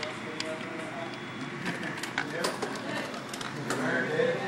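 Indistinct background voices over a steady hum, with scattered sharp clicks and knocks from the camera being handled and moved.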